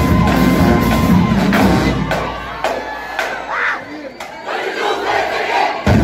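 Marching band with brass and drums playing, stopping about two seconds in; the crowd then shouts and cheers until the band's percussion comes back in at the very end.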